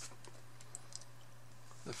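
Quiet room tone with a steady low hum and a few faint clicks as a hand handles the pages of an open leather-bound Bible. A voice starts near the end.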